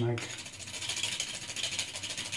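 Whole nutmeg rubbed back and forth on a small metal hand grater: a rapid, even rasping scrape.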